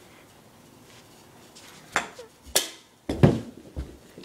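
Quiet at first, then a few sharp knocks about two seconds in and a heavy dull thud a little after three seconds: a body tumbling onto a couch and floor, with the phone bumped about.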